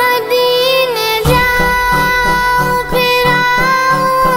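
A young girl singing an Urdu naat in long held, gliding notes. About a second in, a low steady beat of about three pulses a second starts under the voice.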